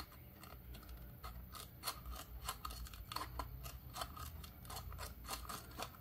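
Scissors snipping small trims off the cut rim of a plastic soda bottle: a series of faint, irregular clicks.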